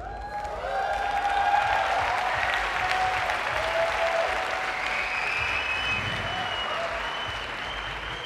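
Audience applauding and cheering, with calls rising over the clapping; it swells about a second in and holds to the end, easing slightly.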